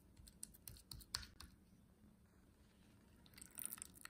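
Faint, light clicks and taps of a wooden spoon against a glass dish while thick strained Greek yogurt is scooped. There is a scatter of them in the first second and a half and a short cluster near the end.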